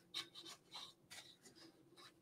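Near silence, with faint light scratches and taps of a small paintbrush dabbing paint onto a wrought iron rack, a few short touches a second.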